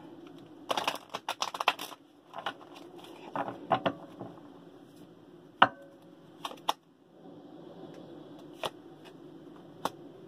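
A tarot deck being shuffled by hand: a quick run of card clicks about a second in, shorter runs around two and four seconds, then a few single sharp taps, the loudest about halfway through.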